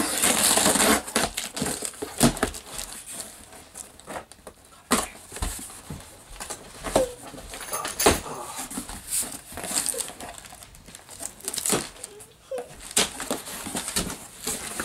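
A cardboard shipping box being opened by hand: a burst of ripping and hissing as the packing tape along the seam is torn open, then scattered rustles, scrapes and knocks as the cardboard flaps are pulled back and packing paper inside is handled.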